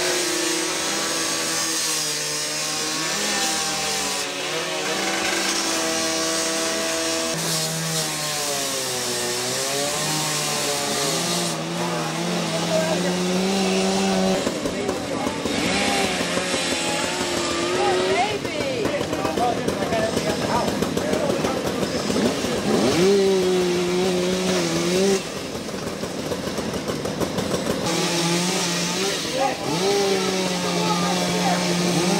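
Two-stroke chainsaw running on a burning house's roof as firefighters cut through it, its engine pitch rising and falling. It sounds rougher and louder from about a third of the way in until past the middle.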